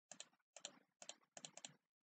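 Faint computer mouse clicks, mostly in quick pairs, about six in two seconds, as the picture viewer is clicked on to the next photo.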